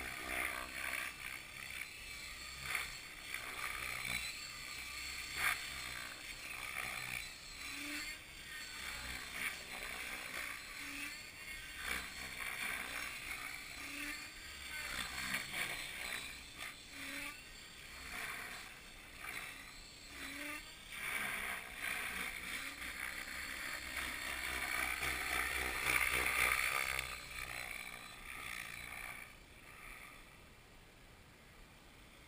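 Radio-controlled model helicopter flying overhead, its motor and rotor whine rising and falling as it manoeuvres. It is loudest about two-thirds of the way through, then fades away near the end.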